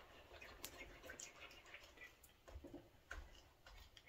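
Faint, irregular light ticks and clicks of a wooden spoon stirring a thick, sticky peanut butter and sugar mixture in a nonstick pan.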